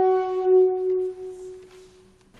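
A hand-held horn blown in one long steady note that swells twice, then fades away over the second half.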